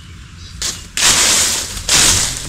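Dry bamboo leaf litter crackling and rustling as it is disturbed: a short burst about half a second in, then a longer, louder one from about a second in.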